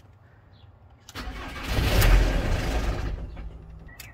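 Ford Transit 2.4 TDDI Duratorq diesel cranked on the starter with its crank angle sensor unplugged, to build oil pressure before a real start. It briefly fires, which its older mechanical injectors allow. The sound starts about a second in, is loudest around two seconds, then fades out as the engine dies.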